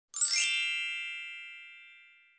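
A bright chime sound effect for a title card: a cluster of high ringing tones comes in at once, then fades away slowly over about two seconds.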